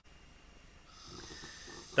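A person's faint breath drawn in between sentences, growing slowly louder over the second half just before speech resumes.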